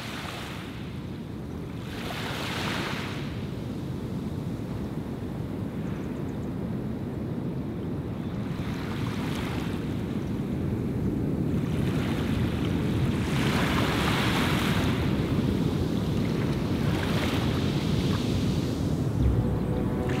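Waves washing on a shore: a steady low rumble with a rush of hiss from each wash every few seconds, growing gradually louder.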